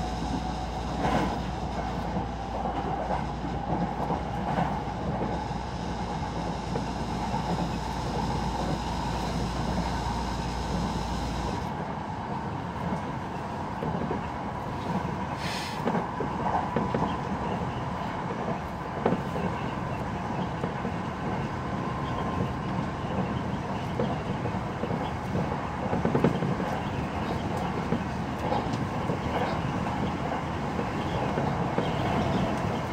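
Electric commuter train running at speed, heard from inside the front car: a steady rumble of wheels on rail with occasional sharp clicks. A low hum and a high steady whine cut out about a third of the way through, and the train runs on with the rumble alone.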